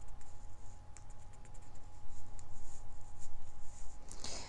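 Fingertips rubbing and tapping on tarot cards laid on a table: light scratching and many small clicks of card stock, over a low steady background rumble.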